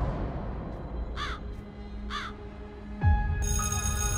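A bird cawing twice, about a second apart, over a low rumble. About three seconds in a deep boom hits and music begins with high, bell-like sustained tones.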